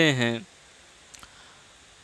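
A man's chanted line of verse ending on a held word, followed by quiet room tone with one faint short click a little over a second in.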